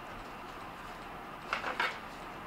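Quiet room tone, then near the end a short double swish as a Japanese tachi sword is swung in an arc through the air.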